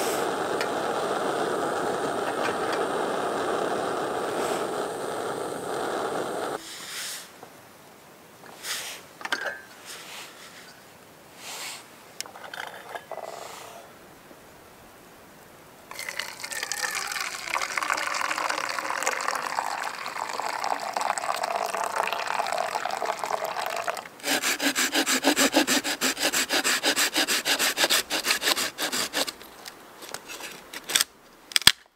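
Snow Peak GigaPower canister stove burning steadily under a pot for about six seconds, then cut off. After a quieter stretch with a few knocks, water is poured from the pot into a mug for about eight seconds. Near the end, a hand saw cuts through a dead log in fast, even strokes.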